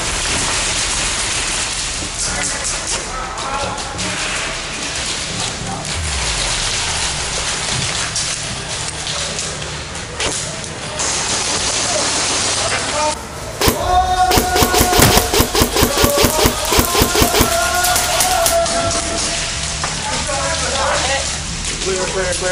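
Airsoft guns firing in an indoor arena over steady background noise, with a dense run of rapid sharp shots from about a third of the way in to past the middle.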